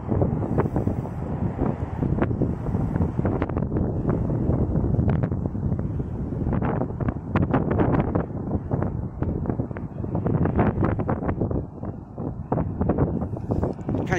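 Wind buffeting a phone microphone outdoors, a low, uneven rushing noise that surges and eases in gusts.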